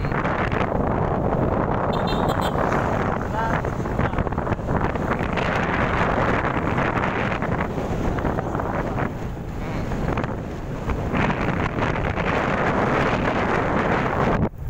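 Wind buffeting the microphone on a moving motorcycle, mixed with the bike's running engine and road noise, easing slightly around ten seconds in.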